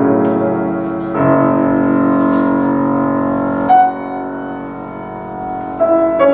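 Grand piano played four hands: a rich chord rings, a new full chord is struck about a second in and held, then the music thins to soft, sparse high notes.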